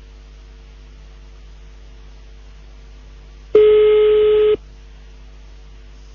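Telephone ringback tone heard over the phone line: one steady beep about a second long, about three and a half seconds in, with a low line hum either side. The called phone is ringing and has not been answered.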